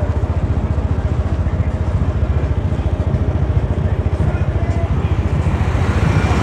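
Small motorcycle engine running steadily close by while riding, a fast, even low pulsing that carries on throughout.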